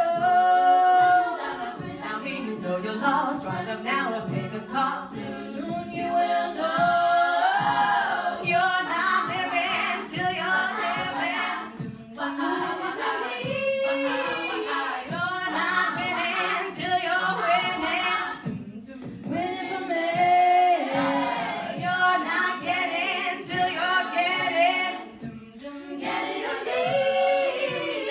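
A cappella group singing a pop song, female lead voices over a backing sung by the rest of the group, with no instruments. The singing dips briefly a few times between phrases.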